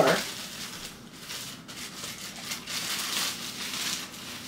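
Plastic packaging crinkling and rustling irregularly as a garment is pulled out of its bag.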